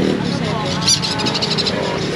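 Small caged birds chirping, with a quick run of high chirps about a second in, over background voices.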